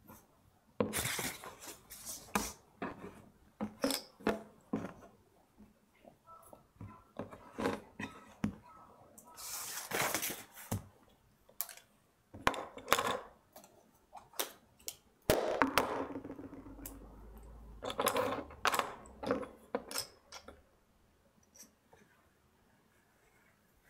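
Things being handled on a woodblock carver's bench: scattered clinks and knocks of tools and objects being set down on wood, with a few bursts of paper rustling as a printed sheet is laid over the block.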